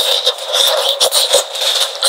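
Close-miked ASMR eating sounds: braised meat on the bone being torn apart by gloved hands and bitten, a dense sticky crackle with many sharp clicks.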